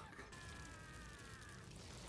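Faint audio of the anime episode: a drawn-out, high, strained voice that slides slowly down in pitch for about a second and a half.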